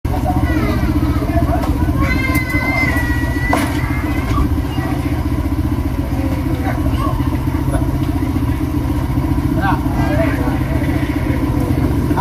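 Motorcycle engine idling steadily, with people's voices talking over it now and then.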